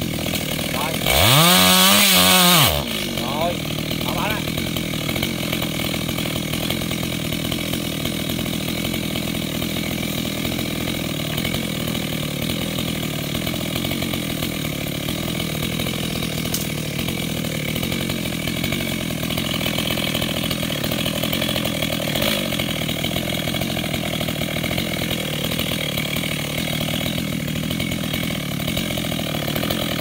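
GZ4350 petrol chainsaw revving up hard and dropping back about a second in, then running steadily.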